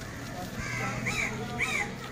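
A bird calling three times, short calls about half a second apart, over a steady low background hum.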